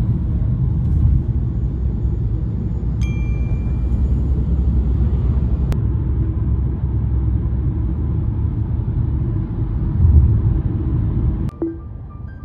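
Steady low rumble of a moving car heard from inside the cabin, with a single ringing chime about three seconds in. The rumble drops away suddenly near the end.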